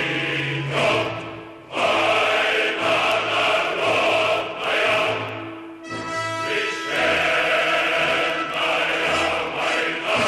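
A choir singing with musical accompaniment, holding long notes, with brief breaks between phrases about two and six seconds in.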